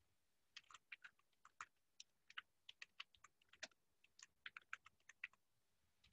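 Computer keyboard being typed on: a quick, irregular run of faint key clicks starting about half a second in, as a line of text is entered.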